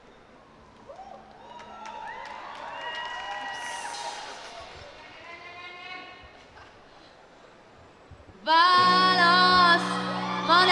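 Live rock band on stage: electric guitar playing soft sliding and held notes, then about eight and a half seconds in the band comes in loudly with a sung melody over bass.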